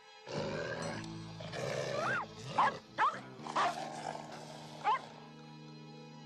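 A canine, dog or wolf, growling in a rough burst of about five seconds. Several short, sharp cries sweep up and down in pitch in its second half. Steady background music plays underneath.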